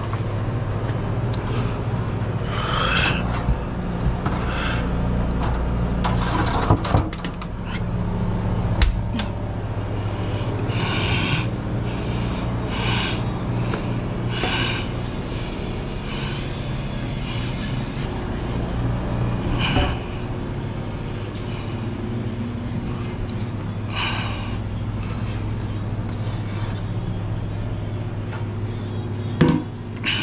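Steady low mechanical hum of commercial kitchen equipment, with scattered clanks and scrapes of metal sheet pans and hotel pans being handled and a few sharp knocks among them.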